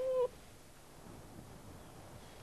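Ladakhi wild dog at the den giving one short, steady-pitched whine right at the start, followed by faint softer whimpers.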